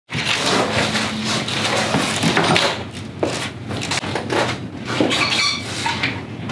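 Knocks, bumps and rustling of someone handling objects and moving about in a small office room, a dense run of short clatters with a brief squeak near the end.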